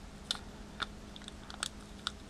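A small wrapped alcohol-wipe packet being worked open by hand: a few short, sharp crinkles and crackles at uneven intervals, bunching closer together near the end.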